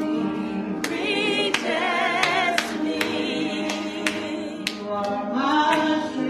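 Church choir singing a gospel song, with a voice wavering in vibrato above the group, and sharp claps keeping a steady beat about every two-thirds of a second.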